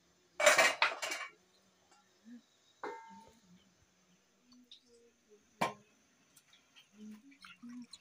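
Metal kitchenware clattering as vegetables are tipped from a plate into a steel bowl, a loud clatter about half a second in. Near three seconds a metal clink rings briefly, and later there is a single sharp knock.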